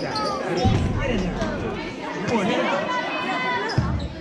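A basketball bouncing on the gym floor, with a couple of heavy thuds about a second in and near the end, under spectators' voices calling out in a large gym.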